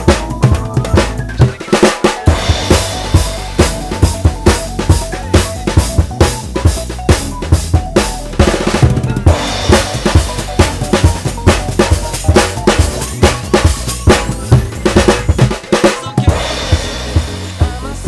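Acoustic drum kit played with sticks in a busy, fast groove of kick, snare and cymbal strikes with fills, over the song's instrumental backing with a steady bass line.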